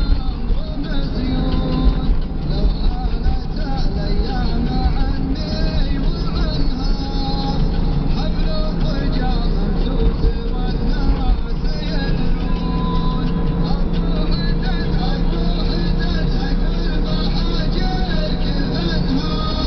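Steady road and engine rumble of a car being driven, with music and a singing voice playing over it.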